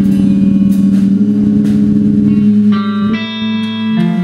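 A live instrumental band playing, with guitar to the fore over sustained low notes and a few light percussion hits. A bright held chord comes in about three seconds in.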